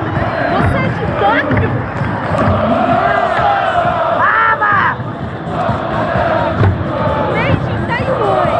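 A large stadium crowd shouting and chanting, a dense wall of many voices, with low drum beats from taiko drummers underneath.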